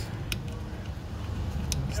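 A few light clicks, one about a third of a second in and two close together near the end, as a small 5 mm bolt is set by hand into a brake caliper, over a steady low background rumble.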